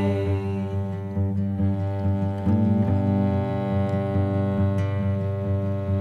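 Instrumental passage of a folk song: a bowed cello holding low sustained notes, with fainter higher string tones over it and no singing.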